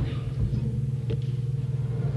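A steady low hum with a couple of brief soft knocks, about half a second and a second in, between speakers.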